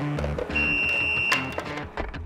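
Background music with a steady beat and low sustained notes, with a high, steady beep of just under a second in the middle that ends in a sharp click.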